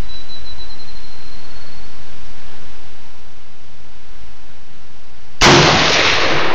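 A single shot from an AR-15 rifle in .223, one sudden loud report about five and a half seconds in, over steady outdoor background noise.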